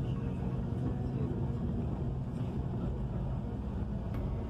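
Cabin noise of a moving intercity bus at highway speed: a steady low engine and road rumble.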